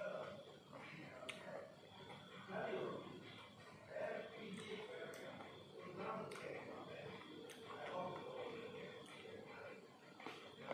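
Close-up mouth sounds of someone eating seedless green grapes: about half a dozen sharp, wet clicks scattered through, over a low, muffled murmur of voice.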